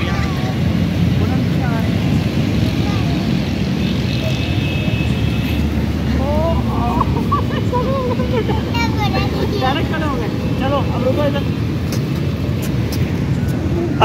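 A steady low rumble throughout, with high-pitched voices calling out in the middle stretch.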